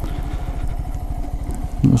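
Honda Grom's 125 cc single-cylinder engine running at low speed with a steady low pulsing as the bike rolls slowly. A voice starts near the end.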